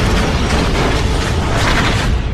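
Glitch-style logo sound effect: a loud, dense crackling static with a heavy low rumble underneath, holding steady as the distorted logo resolves.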